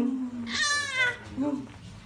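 A toddler's high, wavering squeal lasting about half a second, with short lower vocal sounds just before and after it.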